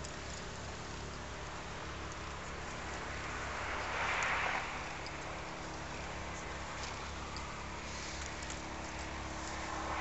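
Small waves washing on a shingle beach: a steady hiss with a low hum beneath it, and one louder surge of wash about four seconds in.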